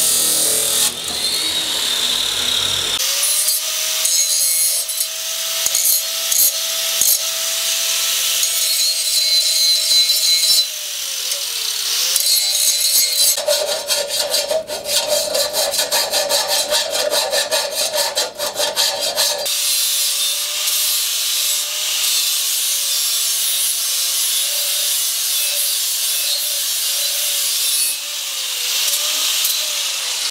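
Abrasive chop saw cutting steel bar for the first few seconds, then a hand-held angle grinder running steadily as it grinds steel held in a vise. The motor note dips briefly near the middle, and for several seconds after that the grinding turns harsher and more rasping as the disc bears down on the metal.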